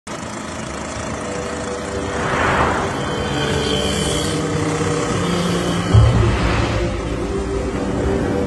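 Film soundtrack of a motor scooter riding through city traffic, its engine and passing vehicles mixed with background music. Two swells of passing-traffic noise come about two and four seconds in, and a sudden low thud about six seconds in.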